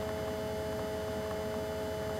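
Steady electrical hum: a low buzz with two steady mid-pitched tones over faint hiss, unchanging throughout.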